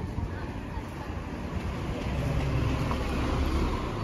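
A car driving past on a wet street, its engine rumble and tyre hiss swelling to a peak in the second half and easing off near the end.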